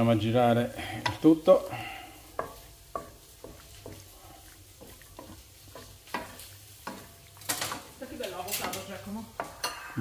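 A wooden spoon stirring rigatoni through shrimp, zucchini and tomato in a non-stick frying pan. Scattered clicks and scrapes against the pan, two louder knocks about a second and a half in, over a light sizzle.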